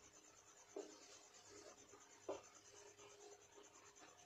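Faint squeaks of a marker pen writing on a whiteboard, with two short strokes standing out about a second in and just past the middle, over near-silent room tone.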